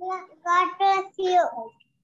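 A young child's high voice in four drawn-out, sing-song syllables, heard over a video call.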